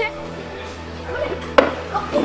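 A single sharp smack about one and a half seconds in, over faint background music.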